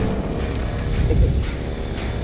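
A low, steady rumbling noise with no clear events in it.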